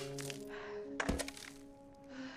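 A single heavy thunk about a second in, loud and sudden, most likely a swung long wooden handle striking. It sits over film-score music with long held notes.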